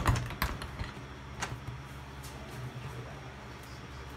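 Plastic seat cover of a golf cart being lifted open: a few sharp clicks and knocks, most of them in the first second and a half, over a steady low hum.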